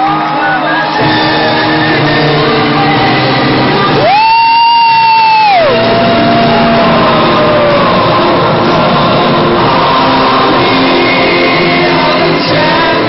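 Loud music with singing, mixed with shouting and whooping. A long held note rings out about four seconds in, followed by a lower one.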